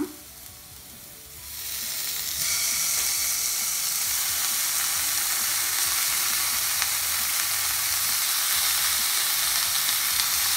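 Raw chicken pieces sizzling in hot oil as they go into a nonstick kadai of fried onion and spices. The sizzle rises in about a second and a half in, grows stronger a second later, and then holds steady.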